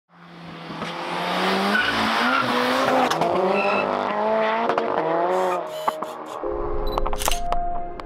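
A 515 bhp big-turbo, stage three MK5 Golf GTI's turbocharged four-cylinder accelerating hard past and away, the engine note rising and dipping with a few sharp cracks around the middle. The engine fades after about five and a half seconds and music with a deep bass comes in near the end.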